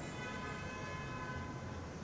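A faint, steady whine of several tones held together over a low hum, fading slightly near the end.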